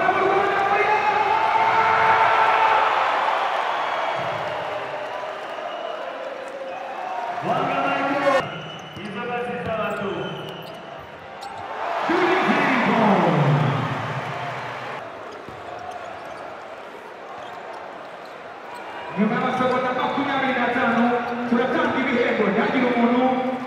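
Basketball bouncing on the court during live play, under drawn-out voice calls that come in several spells and ring through the large hall, one sliding down in pitch about halfway through.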